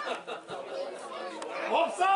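Several voices on a football pitch overlapping in chatter and calls, with one louder shout near the end.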